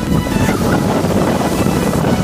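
Wind buffeting the microphone: a loud, steady noise strongest in the low range.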